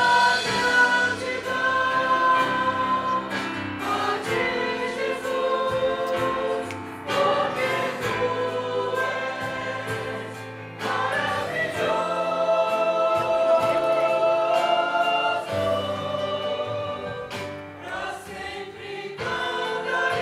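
A church praise group singing a worship song together in long held notes, accompanied by violins and guitars.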